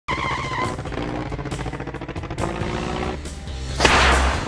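Intro jingle: music mixed with car sound effects. It opens with a high, wavering squeal and ends with a loud whoosh near the end.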